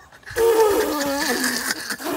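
A man's drawn-out retching groan, falling in pitch over about a second, as he gags on a mouthful of dry ground nutmeg.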